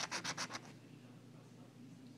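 Scratch-off lottery ticket being scratched: a quick run of short scraping strokes, about ten a second, that stops after well under a second as the number spot is uncovered.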